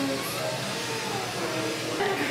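A steady rushing noise, with faint voices in the background.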